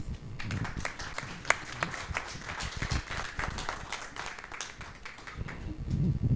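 A small audience clapping, thinning out near the end.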